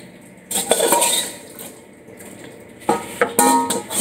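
A metal ladle knocking and scraping against a large metal cooking pot as food is scooped out, in a few separate clinks, with a brief pitched ringing near the end.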